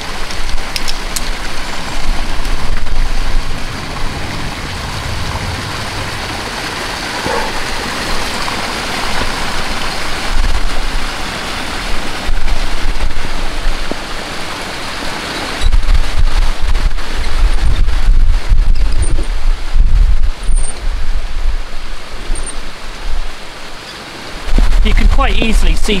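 Wind on the microphone outdoors: a steady rushing hiss, with heavy buffeting gusts from about halfway through and again near the end.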